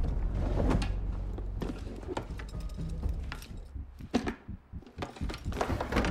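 A low steady rumble with a series of knocks and thuds scattered through it, heaviest near the start and again near the end.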